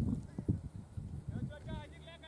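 Indistinct voices calling out across the field, with a few low thuds in the first half-second and a quick run of short, arching calls in the second half.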